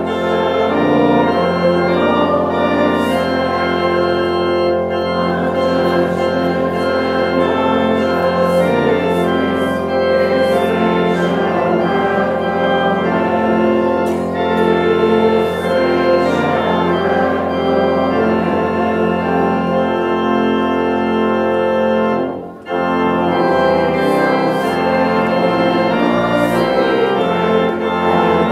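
Pipe organ playing sustained chords, with a brief break about 22 seconds in, after which a lower bass note enters.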